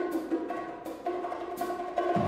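Jazz big band playing live: a light passage of short, sharp percussion accents, a stroke every half second or so, over held pitched notes.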